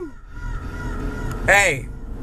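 Low steady rumble of a car heard from inside its cabin, with a brief vocal sound from the man falling in pitch about one and a half seconds in.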